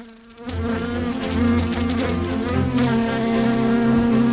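A fly buzzing in flight: a steady, pitched drone with a slight waver that starts about half a second in.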